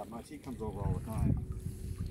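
Quiet talking from people close by, with wind rumbling on the microphone.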